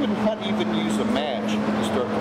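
Conversation: a person speaking, with a steady low hum running underneath.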